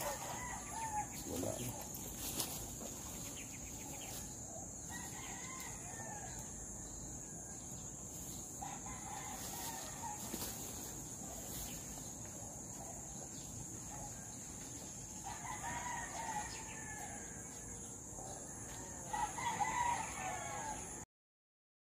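Bird calls, several of them about a second or two long, coming at intervals and loudest near the end, over a steady high-pitched insect drone.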